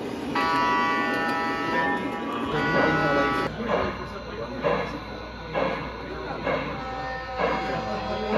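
O-gauge model diesel locomotive's sound system blowing its horn, one long blast and then a shorter one. After that an O-gauge model steam locomotive's sound system chuffs slowly, about once a second.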